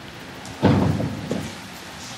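A sudden dull thump about half a second in, dying away quickly, followed by a smaller knock.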